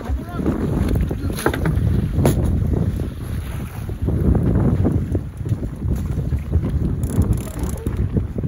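Wind buffeting a phone microphone on an open boat at sea, a loud, uneven rumble, with a couple of short knocks about one and two seconds in.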